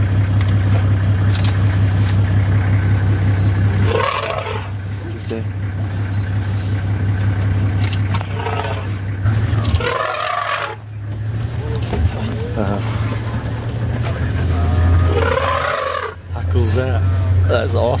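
An open safari vehicle's engine idling steadily, a low even hum that drops out briefly about ten seconds in. Quiet talk comes and goes over it.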